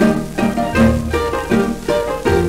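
Instrumental passage of a 1953 Greek laïko song played from its original 78 rpm record: a string band's melody over a steady bass beat, with no singing.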